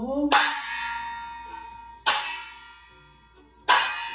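Meditation bell struck three times, about a second and a half apart; each strike rings out with a steady tone and slowly fades.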